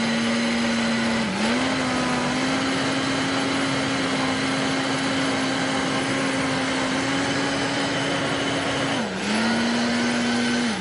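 Vitamix high-power countertop blender running steadily, puréeing cooked kabocha squash with nut milk into a thick soup. Its motor pitch sags briefly about a second in and again near the end, then picks back up.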